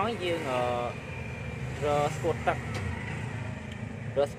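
A man talking in short phrases over a steady low rumble of vehicle noise.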